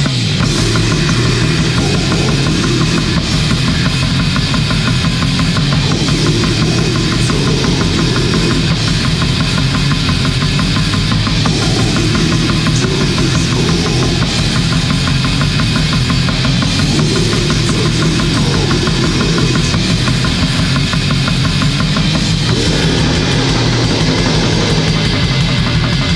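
Bestial black metal: heavily distorted guitar and bass over fast, relentless drumming, played loud and unbroken.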